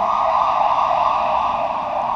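A loud, steady hiss in a narrow mid-pitched band, even throughout with no rise or fall in pitch.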